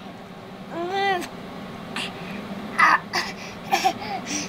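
Baby making one short cooing sound that rises and falls about a second in, while drinking from a bottle. A few short breathy noises follow in the second half.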